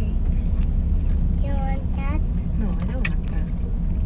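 Steady low rumble of a car moving slowly, heard from inside the cabin. A voice speaks briefly over it in the middle.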